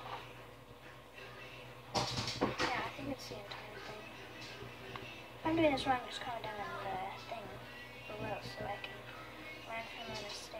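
A voice and music playing quietly in the background, with a few sharp clicks and knocks of small plastic items being handled about two seconds in.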